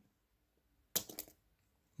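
The folding clasp of a Rolex Datejust clone's metal bracelet clicking open: one sharp metallic click about a second in, followed by two or three lighter clicks.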